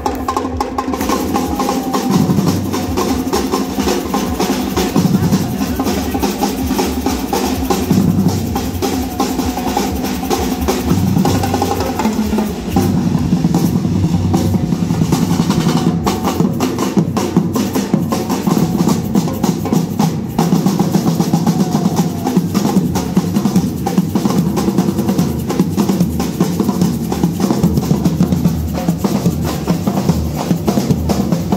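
A drum troupe playing marching snare drums, paired drums and large bass drums struck with mallets, keeping up a dense, continuous beat.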